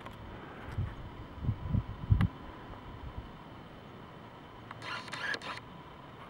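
Camera handling noise during a pan: a few low bumps and a sharp click about two seconds in, then a short rustle near the end.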